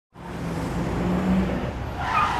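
A motor vehicle's engine running amid street noise, fading in at the very start, with a steady low hum that rises slightly in pitch just past a second in.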